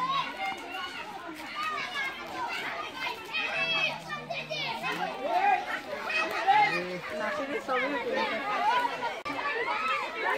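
A crowd of children chattering and shouting over one another, many high voices at once.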